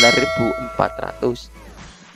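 A single bell-like ding from a subscribe-button animation's notification-bell sound effect. It rings with several steady tones and fades away over about a second and a half.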